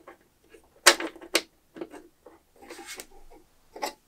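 Small clicks and knocks of a hold-down clamp, its bolt and star knob being tightened and handled on a CNC spoil board, with two sharper clicks about a second in.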